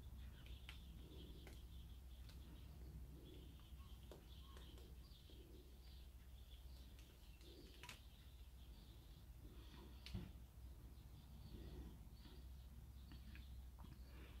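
Near silence: a low steady room hum with faint high chirps scattered through, and one light click about ten seconds in.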